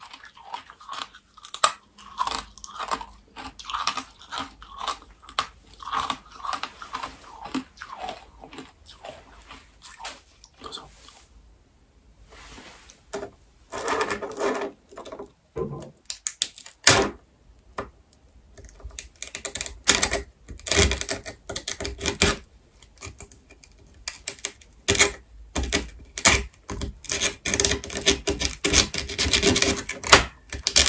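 Close-miked crunching and chewing of brittle dalgona sugar candy for roughly the first ten seconds. After a short quieter pause, a thin pin scratches and picks at a dalgona disc, with sharp clicks and snaps as the candy cracks.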